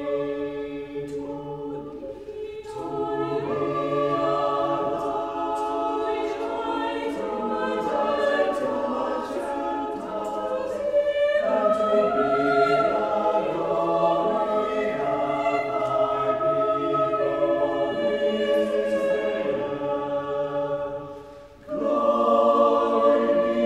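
Church choir singing a slow choral piece in several parts, with held notes and changing harmonies. The sound drops away briefly just before the end as a phrase closes, and the voices come back in with the next phrase.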